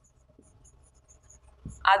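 Marker pen writing on a whiteboard: a faint run of short, light squeaky strokes as a word is written out.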